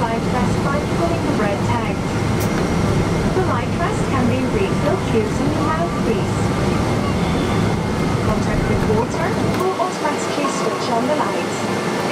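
Airliner cabin sound: background passenger chatter over the steady low hum of the cabin, with the low hum dropping away about ten seconds in.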